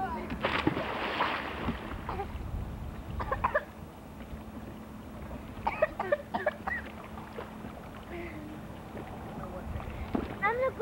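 Water splashing in a swimming pool for about a second and a half near the start, followed by brief snatches of voices, over a steady low hum.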